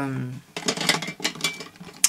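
Small hard objects clicking and clattering irregularly for about a second and a half, as makeup products are rummaged through and picked out by hand.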